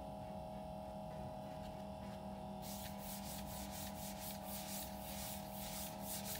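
A gloved hand rubs back and forth across the cold plate of a mini liquid nitrogen screen-separator freezer, in quick repeated strokes of about three a second that start about two and a half seconds in. Under it the running freezer hums steadily.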